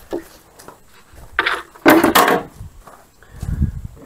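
A cut piece of drywall being handled and set down: a scrape, then a couple of sharp knocks near the middle, and a low thump near the end.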